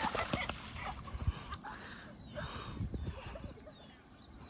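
Feet running and splashing through shallow river water, a quick run of splashes at first, then softer patches of splashing as the runner moves away.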